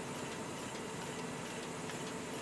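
Yogurt-drink bottling and sleeve-labelling machinery running, a steady even hum with no distinct strokes.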